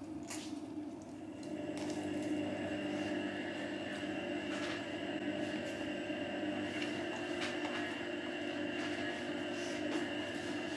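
Washing machine running: a steady hum with a thin high whine, growing a little louder about a second in. A few faint crunches of flaky pastry being chewed sound over it.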